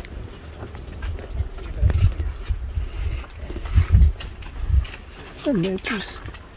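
Irregular low rumbling and dull thumps on a handheld phone's microphone as it is moved about, loudest about two seconds in and again around four seconds.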